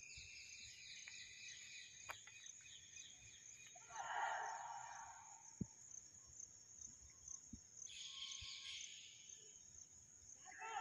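Faint, steady high chirring of insects in the grass. A brief louder call breaks in about four seconds in and another near nine seconds, over faint open-air background.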